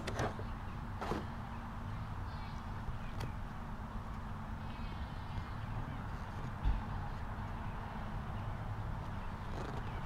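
Steady low wind rumble on the microphone outdoors, with faint clicks and rustles of a small cardboard product box being handled and opened, and one dull thump about two-thirds of the way through.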